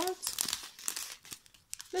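Small plastic zip-lock bags of diamond painting drills crinkling in the hand as they are handled and flipped through, in short irregular crackles.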